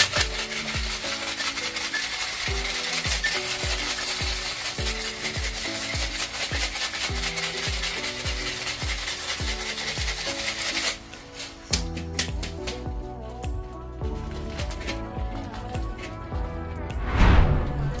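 Ice rattling hard inside a metal cocktail shaker during a vigorous shake, stopping abruptly about eleven seconds in. Background music with a steady beat runs underneath, and a short loud thump comes near the end.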